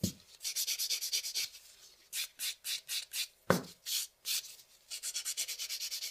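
A pink buffer block is rubbed back and forth over an acrylic nail in quick rasping strokes, about five a second, with a short lull near two seconds. This is the buffing stage that smooths the filed surface so the top coat will shine. A single short knock comes about three and a half seconds in.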